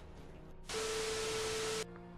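A burst of static hiss, about a second long, with a steady tone under it, starting and stopping abruptly. It is an edited-in static transition sound effect marking a cut.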